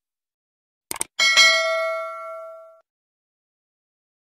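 Subscribe-button sound effect: a quick pair of mouse clicks about a second in, then a notification bell dings and rings out, fading over about a second and a half.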